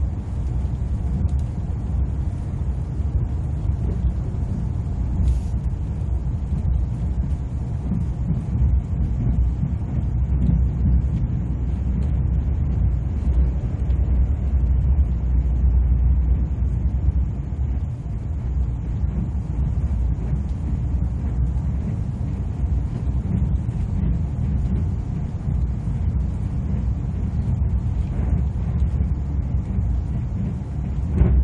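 Steady low rumble of an ITX-Saemaeul electric multiple-unit train running at speed, heard from inside the passenger cabin. It grows a little louder around the middle.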